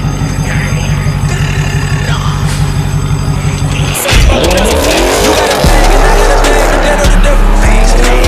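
Hip-hop backing track with a steady beat. About four seconds in, a car's V8 engine starts and revs hard, its pitch rising and falling again and again over the music. A heavier bass comes in shortly after.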